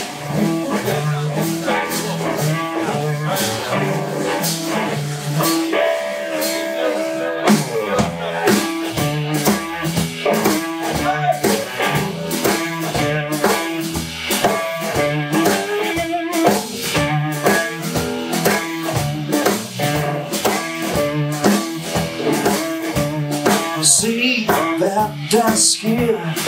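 Live electric blues trio playing an instrumental passage. A Strat-style electric guitar plays alone at first, with a few bent notes about six seconds in. Bass guitar and a Ludwig drum kit come in about seven or eight seconds in and set a steady beat under the guitar.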